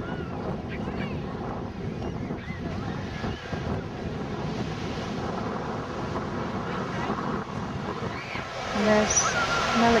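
Pacific surf washing steadily onto the beach, mixed with wind on the microphone and faint voices of people nearby; a louder voice cuts in near the end.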